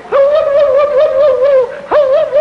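A person's mock war whoop: a high held voice warbling up and down about five times a second, each whoop opening with an upward swoop, with a fresh breath and swoop just before the end.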